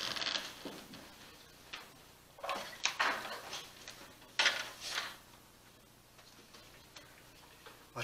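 Handling noise close to the microphone: three short bursts of rustling and light clatter, near the start, about two and a half seconds in and about four and a half seconds in, over quiet room tone.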